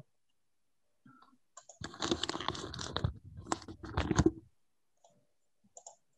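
Crackling, rustling handling noise with sharp clicks, picked up by a video-call participant's microphone as their audio comes on. It lasts about two and a half seconds, starting about two seconds in, with near silence around it.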